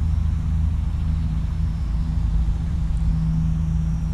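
Eachine P-51 Mustang micro RC plane's electric motor and propeller buzzing steadily in flight, heard faintly at a distance under a steady low rumble of wind on the microphone.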